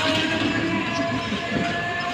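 Inside a crowded Indian passenger train carriage: a steady low rumble of the train with a faint held tone running through it, and people's voices close by.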